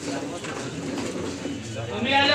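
A bird cooing in low, repeated calls, over a faint murmur of voices.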